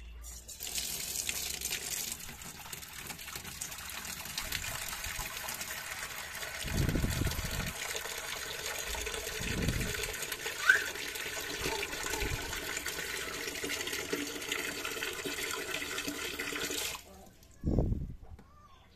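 A thin stream of water pouring into a clear plastic storage tub with a gravel bed, splashing steadily as the tub fills. The flow cuts off suddenly about a second before the end.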